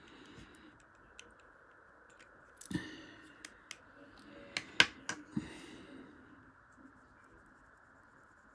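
A few sharp clicks and light knocks of drawing pens being handled and set down on a wooden table. There is one soft knock near the middle, then a quick run of four clicks about five seconds in, the second of them the loudest.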